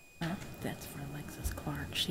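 Faint, quiet speech from people in the room, well below the level of the speech on the microphone.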